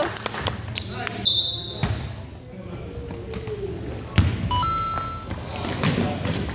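A basketball bouncing on a gym floor in repeated sharp strokes, with short high squeaks of sneakers and players' voices echoing in the large hall.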